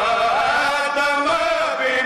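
Men's voices chanting a Shia lament (noha) together into microphones, a continuous wavering melodic line with no pauses.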